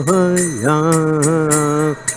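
A man singing a devotional chant into a microphone, one long drawn-out phrase that dips in pitch and rises again before holding. Small hand cymbals keep a steady beat behind it at about four strikes a second.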